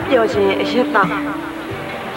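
A man speaking over background music that holds one long steady note, which stops near the end.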